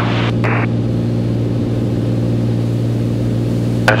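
Beechcraft A36 Bonanza's six-cylinder piston engine and propeller droning steadily at cruise power, heard from inside the cabin.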